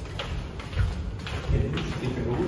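Footsteps of people walking along a corridor floor: a series of soft, evenly spaced steps about half a second apart.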